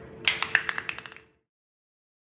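A quick run of about ten sharp clicks and taps as a chimpanzee handles a small hard object against the metal cage mesh, over a faint steady hum. The sound cuts off suddenly about two-thirds of the way through.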